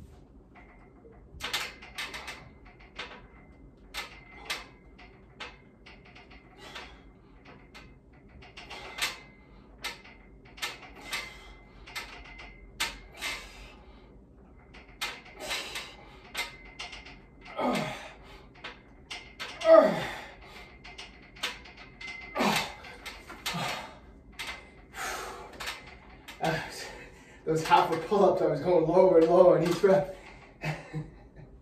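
A man breathing hard in short, sharp exhales through a set of band-assisted pull-up reps, with strained grunts that fall in pitch partway through. Near the end comes a long, loud, strained vocal sound as the set finishes.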